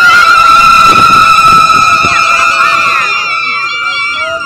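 Several women in a crowd ululating: loud, high-pitched celebratory cries held together for a few seconds, starting suddenly and tailing off near the end.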